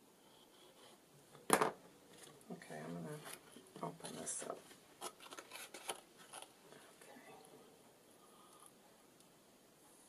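Paper and cardstock being handled on a craft table: a single sharp knock about a second and a half in, then a few seconds of irregular rustling, sliding and tapping of card, fading out after about six seconds.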